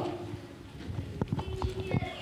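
A handful of light, irregular knocks and clicks in the second half, picked up by a handheld microphone as the person holding it moves at a wooden pulpit: handling and movement noise.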